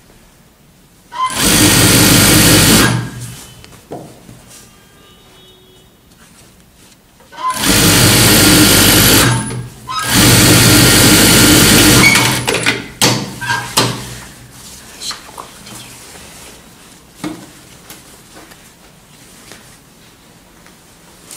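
Table-mounted TYPICAL industrial sewing machine running in three stitching bursts of about two seconds each, the last two close together. Light clicks sound between and after the runs.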